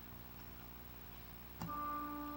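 Quiet room tone, then about one and a half seconds in a musical instrument starts playing held notes.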